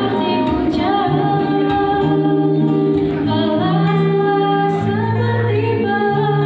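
Live acoustic performance: a woman singing long, sliding held notes over two strummed and picked acoustic guitars.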